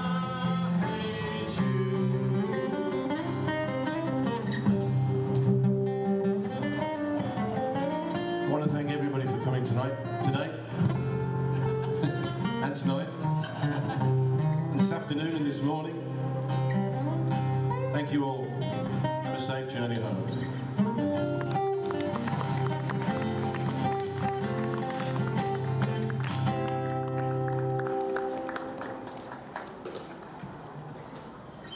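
Live acoustic guitar music, two guitars picked and strummed over a steady low bass line. The playing stops near the end as the tune finishes.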